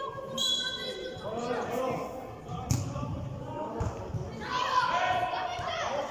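A football being kicked on artificial turf in a large indoor hall, one sharp thud about three seconds in, with children's high-pitched voices calling out before and after it.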